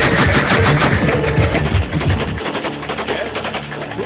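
Rifles fired into the air in rapid bursts of shots, dense in the first half and thinning out after about two seconds, over loud music.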